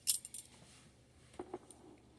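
Light handling sounds as model kit boxes are moved about: a short cluster of small clicks and clinks right at the start, then a couple of fainter clicks about one and a half seconds in.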